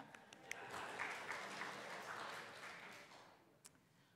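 A small church congregation applauding: the clapping swells about half a second in and dies away before the end.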